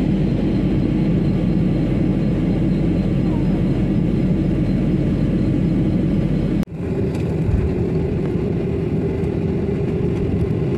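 Airliner cabin noise: the steady rush of jet engines and airflow heard from inside the passenger cabin during the descent. About two-thirds of the way in it cuts off suddenly and gives way to a different steady engine noise with a held hum as the aircraft moves on the ground after landing.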